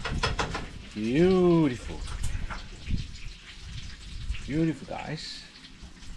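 A man's voice making two wordless sounds: a long one that rises and falls in pitch about a second in, and a short one near the five-second mark, with faint scattered clicks between.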